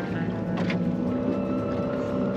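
Background music with sustained tones that change pitch every second or so.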